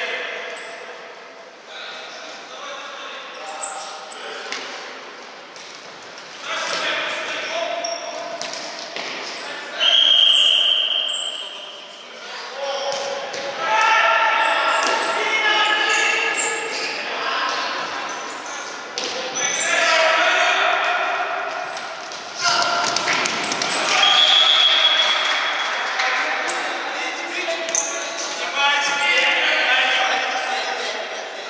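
Futsal being played in a sports hall: players shouting, the ball thudding off feet and the wooden floor, and two referee whistle blasts, one about ten seconds in and one near twenty-four seconds.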